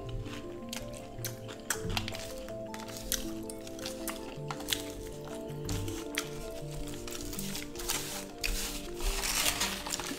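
Soft background music with held notes that change step by step, over close eating sounds: scattered clicks and smacks of chewing a sauce-covered, Hot Cheetos-coated fried chicken drumstick.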